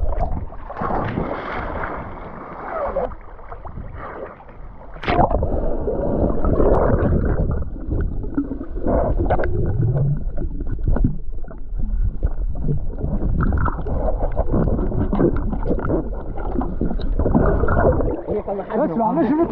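Muffled underwater sound of seawater churning and gurgling around a submerged action camera, dull and cut off above the treble. A sharp knock about five seconds in, after which the water noise grows louder.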